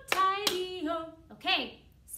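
A woman's voice, with two sharp hand claps in the first half second.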